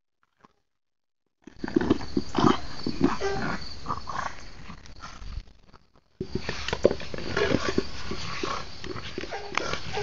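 A French Bulldog's breathing and grunting noises mixed with the scrape and bump of a large bowl it carries in its mouth and pushes over grass, in short irregular bursts. The sound starts about a second and a half in and drops out briefly near six seconds.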